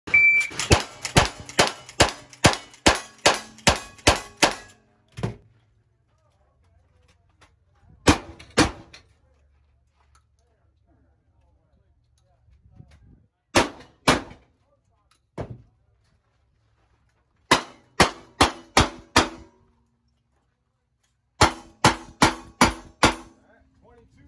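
A short high beep right at the start, then gunshots in quick strings, each shot followed by the ring of steel targets being hit. About ten rapid shots come in the first five seconds, then single shots and pairs, a string of about six, and a closing string of about five.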